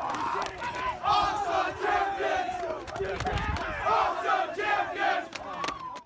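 A team of football players shouting and cheering together in celebration of a championship win, many young men's voices overlapping.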